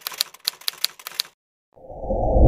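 Typewriter keystroke sound effect: a quick run of about eight sharp clicks over a little more than a second as text types onto the screen, then a brief pause. A low rumbling swell begins just before the end.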